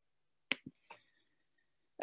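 A single sharp click about half a second in, followed quickly by two fainter ticks, in otherwise near silence.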